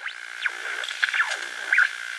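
Electronic synthesizer music: a held high tone with sweeping glides that arc up and down several times a second over a soft hiss.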